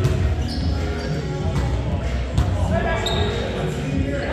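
Indoor volleyball rally in a reverberant gym: several sharp slaps of hands hitting the ball, two short sneaker squeaks on the hardwood floor, and players' voices in the background.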